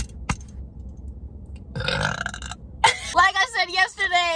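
A woman burps once, a short rough burp about two seconds in, then her voice follows right after it. A light click sounds just after the start.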